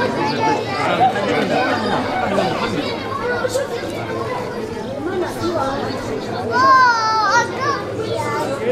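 Street crowd chattering and calling out, many voices overlapping, with one loud, high-pitched, wavering shout from a single person about six and a half seconds in.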